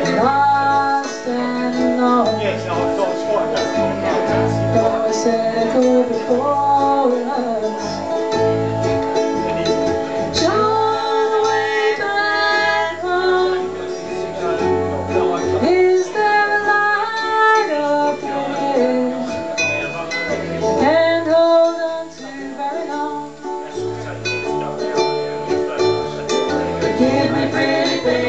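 A ukulele ensemble with accordion playing a slow song live: several strummed ukuleles over a low, steady pulse.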